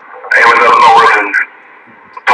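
A voice coming over a CB radio's speaker: one short transmission of about a second, starting a third of a second in, with faint receiver hiss before and after it.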